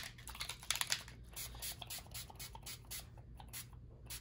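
Distress Oxide pump spray bottle being sprayed onto paper in a rapid run of short bursts, each a quick click and hiss, thinning out near the end.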